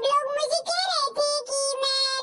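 An unnaturally high-pitched, childlike dubbed voice talking in a sing-song way, its pitch sliding up and down with short breaks.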